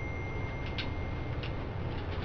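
Low steady room hum with a thin, steady high-pitched tone. A few light clicks sound about three quarters of a second in and again near a second and a half.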